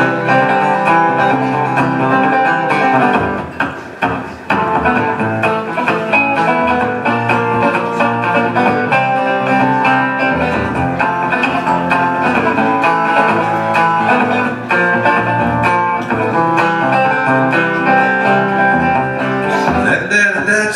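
Sunburst archtop hollow-body guitar played alone in an instrumental break of a country-style song: a steady run of picked notes, which thins out briefly about four seconds in.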